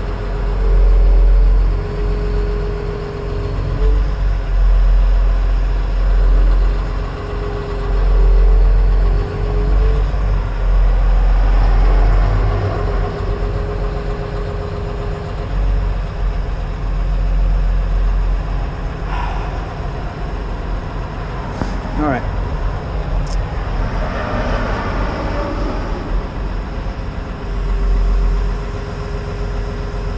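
Cat 336 excavator's diesel engine running inside the cab, with a hydraulic whine that steps up and down in pitch as the machine is worked. A few sharp knocks come in the second half.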